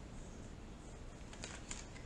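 Tarot cards being handled and laid down on a wooden table: a few faint, light clicks in the second half.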